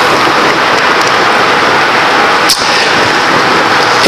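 A steady, loud hiss-like noise, with one sharp click about two and a half seconds in.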